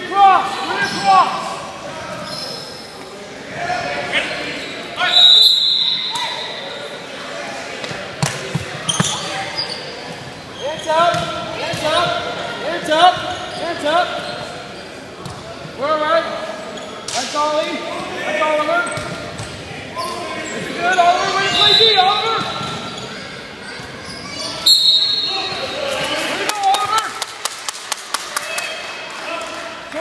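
Voices calling out across an echoing gym during a youth basketball game, with a basketball bouncing on the hardwood floor. A referee's whistle gives two short, high blasts, about five seconds in and again about twenty-five seconds in. Near the end there is a quick run of sharp taps.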